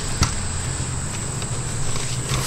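Steady high-pitched chirring of insects such as crickets, over a low background hum, with one short click about a quarter second in.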